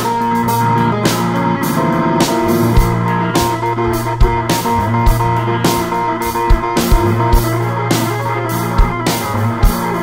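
Live rock band playing an instrumental passage without vocals: electric guitar, drum kit with steady drum hits, and a stage keyboard.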